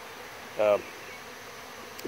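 Steady buzzing hum of a dense crowd of honey bees swarming open sugar-water feeders.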